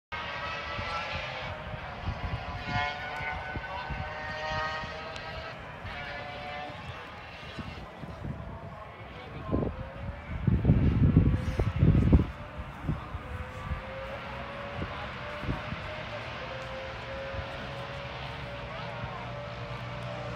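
Distant racing engine running at the hill-climb, its note drifting and slowly rising through the second half, under spectator chatter. Deep rumbling bursts on the microphone about ten to twelve seconds in are the loudest sound.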